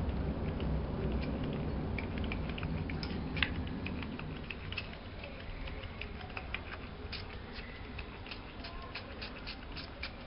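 Faint, scattered light ticks and small taps from handling an aerosol deodorant can over a pile of talcum powder, with a low steady hiss underneath.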